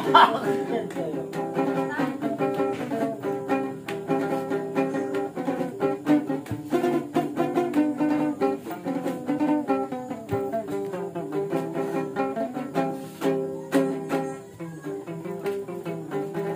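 Ukulele strummed and picked in a steady rhythm, playing a lively tune.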